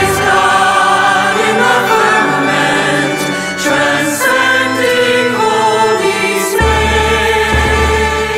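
Music with a choir singing sustained notes over a deep bass. The bass drops out partway through and comes back about two-thirds of the way in.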